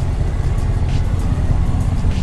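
Pickup truck's engine idling while in reverse, a steady low rumble.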